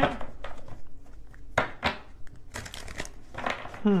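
Tarot cards being handled and shuffled: a few irregular rustling, papery strokes, thickening into a quicker run of them in the second half.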